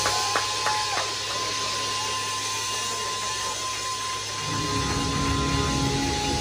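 Live progressive metal band in a sparse, noisy passage: a run of short, clipped hits stops about a second in, leaving a held high tone over a buzzing hiss of amplified noise. Low, distorted bass and guitar swell back in near the end.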